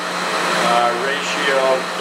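Air handler running in the background: a steady rushing noise with a constant low hum, under a man's speech.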